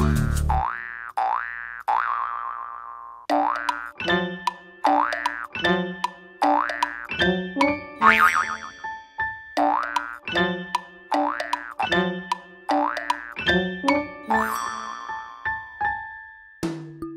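Instrumental break of a bouncy children's song, with cartoon 'boing' spring sound effects repeating about every three-quarters of a second in time with the music, standing for kangaroo jumps.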